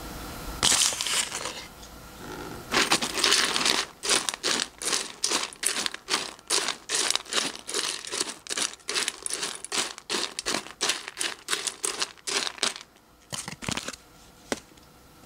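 Dry dog kibble rattling and crunching in a stainless steel bowl as a wooden stick stirs it, a quick run of crisp rustling strokes about two to three a second that dies away near the end.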